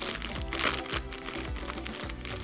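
Thin clear plastic packaging crinkling as it is handled, loudest in the first second, over background music.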